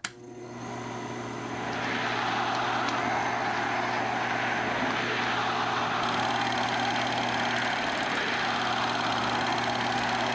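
Film projector running: a steady mechanical whirr that swells over the first two seconds, then holds level.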